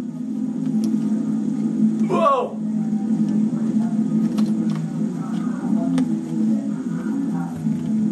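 Electronic keyboard holding low notes, with a short gliding voice-like sound about two seconds in.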